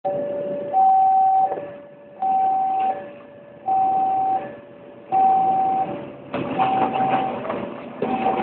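Two-tone electronic warning signal, a lower and a higher note alternating, each held under a second, repeating steadily. About six seconds in, the louder rumble of the departing diesel train joins it.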